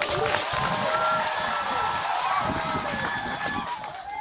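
A crowd clapping with many voices calling out at once; it starts abruptly and eases off near the end.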